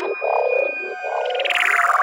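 Psytrance breakdown with the kick drum dropped out: squelchy, bubbling synthesizer effects in a string of short wobbling blobs. Near the end a held tone and a hissing swell come in, just before the beat returns.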